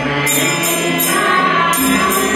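Group of women singing a devotional bhajan together, accompanied by harmonium, tabla and small hand cymbals that jingle about twice a second.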